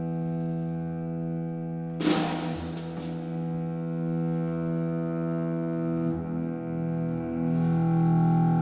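Live contemporary chamber-jazz ensemble playing long sustained notes on bowed strings, violins over double bass. A sharp crash from the drum kit about two seconds in, followed by a few lighter strikes, and the music swells louder near the end.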